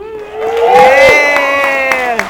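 Audience cheering with several high-pitched voices whooping and screaming together, and a few claps breaking in about a second in.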